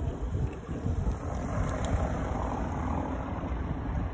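Engine noise of something passing by, swelling around the middle and fading toward the end, over a steady low rumble.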